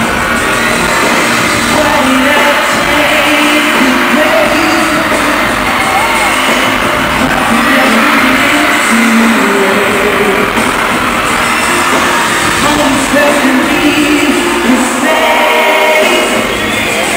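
Live pop/R&B concert heard from the audience: a male singer singing into a microphone over loud amplified backing music in a large hall, the recording thin with little bass.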